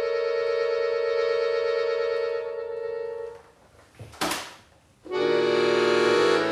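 Button accordion holding a sustained chord that thins out and stops a little over three seconds in. After a short pause comes a brief hiss of air as the bellows are closed with the air valve, then loud full chords begin a new passage about a second before the end.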